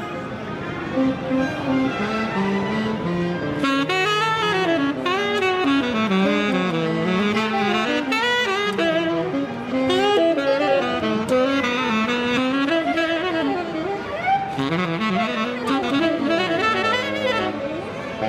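Tenor saxophone played solo through a CE Winds 'The Sig' mouthpiece, modelled on a vintage Otto Link Slant Signature: one continuous melodic line of held notes, sliding pitches and quick runs.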